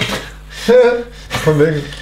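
Short bursts of a man's voice, two or three in quick succession.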